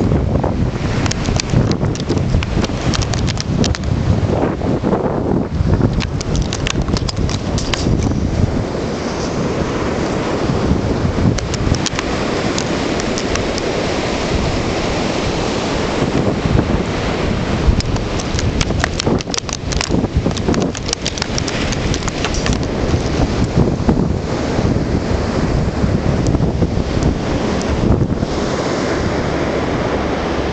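Wind buffeting the microphone over the steady noise of ocean surf, with many irregular crackles and knocks.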